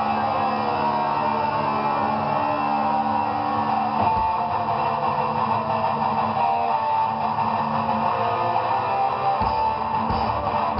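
Heavy metal band playing live: electric guitars with bass, held chords and sustained notes rather than a driving beat. A single low hit comes about four seconds in, and a few more near the end.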